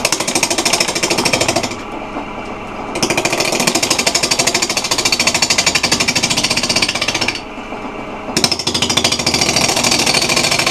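Bowl gouge cutting a spinning, out-of-round holly bowl blank on a wood lathe: a rapid, even chatter as the tool strikes the high side of the blank on every turn. It comes in three bursts, with two short breaks about two seconds and seven seconds in, where only the steady hum of the running lathe is left.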